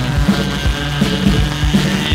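1983 UK DIY punk rock record playing: loud band music with a fast, steady drum beat of about four hits a second.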